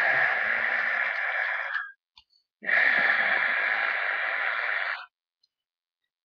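Two long, breathy hissing exhalations from a person's mouth, each lasting about two and a half seconds: the first stops about two seconds in, and the second starts half a second later and stops about five seconds in.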